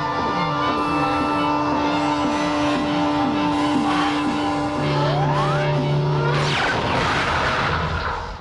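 Electronic synthesizer film music: a held drone note with short falling pulses about twice a second. About five seconds in, a rising sweep and a lower held note come in, then a noisy whooshing swell near the end.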